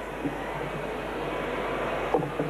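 Steady background noise of a sports hall: the low murmur of a spectator crowd.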